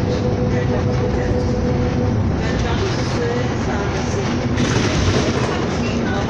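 Inside a moving bus: steady engine and road rumble with rattling from the interior fittings, a steady whine for the first two seconds, and a short hiss about five seconds in.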